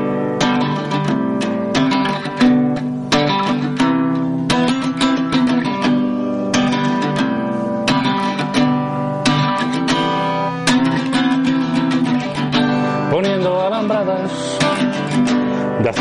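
Strummed acoustic guitar playing an instrumental passage between the verses of a song, a steady chord rhythm of repeated strums. A singing voice comes in near the end.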